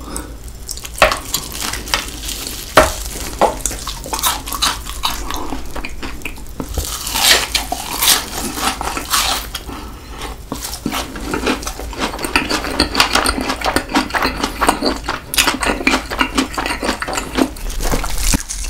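Close-miked chewing and crunching of a crispy Cheetos-coated cheese stick and fried chicken, with many sharp crunches, thickest in the second half.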